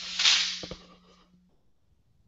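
A person blowing their nose into a tissue: one noisy blast that peaks right at the start and tails off within about a second, with a faint steady low hum underneath.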